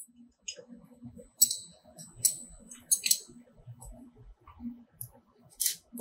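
A ratchet wrench and small steel parts clicking and clinking as the bracket bolts on a CNC router spindle are undone by hand. The sounds come as sharp, separate clicks, several in a cluster about three seconds in.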